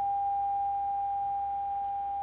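A steady sine-wave tone from two identical speakers driven by a signal generator. It grows gradually quieter as one speaker is moved back toward half a wavelength from the other, putting the two out of phase so their sound partly cancels.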